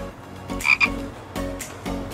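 Frogs croaking in repeated short calls, a sound effect laid in over a pause in the talk.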